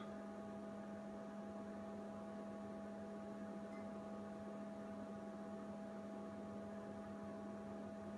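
Steady electrical mains hum: a low tone with several fainter higher tones held level throughout, with no other sound.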